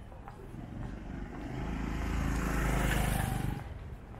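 A motorcycle engine approaching and passing close by. It grows louder to a peak about three seconds in, then falls away quickly as it goes past.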